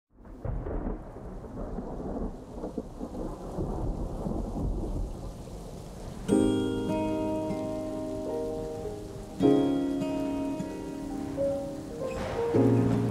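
Rain with rolling thunder, a low rumble under a steady hiss. About six seconds in, sustained musical chords come in sharply, with a second chord about three seconds later, over the rain.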